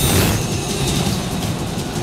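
Trailer sound design: a loud rushing, rumbling noise that swells in suddenly at the start and carries on steadily, mixed with the score.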